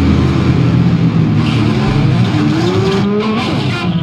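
Loud, distorted New York hardcore band recording with thick guitar noise, its pitch sliding upward in the last second or so as the song winds down to its end.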